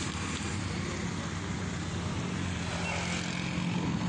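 Small vehicle engine running steadily over outdoor road noise, with a low hum holding from about a second in.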